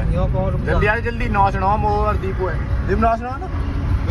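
Voices talking inside a moving car, over the steady low rumble of engine and road noise in the cabin.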